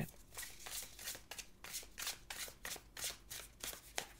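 A deck of tarot cards shuffled by hand: a run of quick, short card sounds at about four a second.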